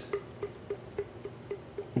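Faint, light knocks of the LWRCI SMG-45's barrel being moved in its mount: about six small ticks, roughly three a second.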